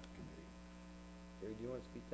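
Steady low electrical mains hum, with a faint voice briefly near the end.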